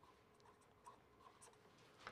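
Faint, scattered strokes of a marker pen writing letters on paper, over near-silent room tone.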